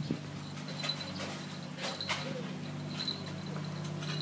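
Footsteps on a concrete path, about one step a second, over a steady low mechanical hum. Short high chirps sound several times.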